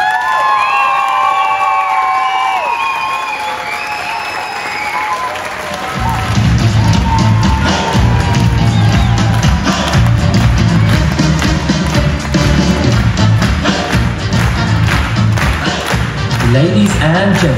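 Theatre audience cheering with high whoops and applauding at the end of a live show. About six seconds in, a music track with a heavy beat starts and the applause carries on over it.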